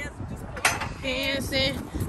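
A sharp metallic clank from a steel outdoor air-walker exercise machine as it is stepped onto and set swinging. Near the end a voice starts singing a line of a song, over a low rumble of wind on the microphone.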